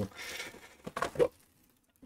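Brief rustle of plastic shrink wrap being handled on a boxed board-game box, lasting under a second, followed by a short spoken word.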